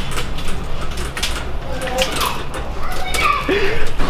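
Metal shopping cart rattling and rumbling as it is pushed across a hard store floor with a grown man riding in it, mixed with short laughs and whoops. The wheels are straining under his weight.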